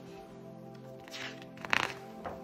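A page of a hardcover picture book being turned by hand: paper rustles briefly about a second in, then a louder swish and flap of the page near the end. Soft instrumental music plays steadily underneath.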